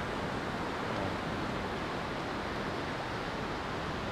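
Steady rush of ocean surf breaking on a sandy beach.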